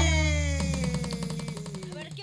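The closing chord of an Andean huayño band dying away, with a note sliding slowly downward in pitch over low held bass as the music fades out.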